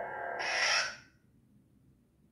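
Lightsaber sound board's steady blade hum, then a short hissing retraction sound about half a second in that cuts off after about half a second. Near silence follows, the blade switched off.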